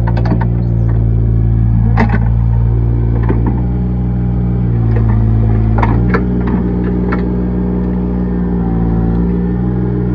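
Excavator engine running steadily under load, its pitch dipping slightly now and then as the hydraulics work the bucket. A few sharp knocks and clatters as the bucket digs into the pit, the clearest about two seconds in and near six seconds.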